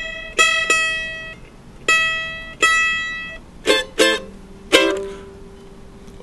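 F-style mandolin picked solo: a sparse run of about eight single notes, some struck in quick pairs, each left to ring and fade, ending on a lower note that rings out.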